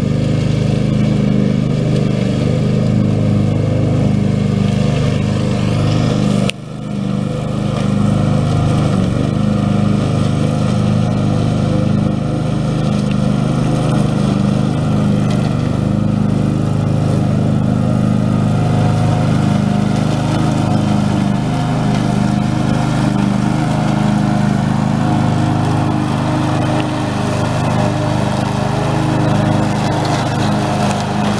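Husqvarna ride-on lawn mower's engine running steadily under load while its deck cuts long grass. The sound drops out sharply for a moment about six seconds in, then comes back.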